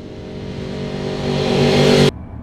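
A trailer sound-design swell: a droning chord under a rushing noise that grows steadily louder, then cuts off abruptly.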